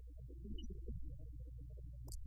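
Muffled, garbled voices with nothing clear above a low register, over a steady low electrical hum.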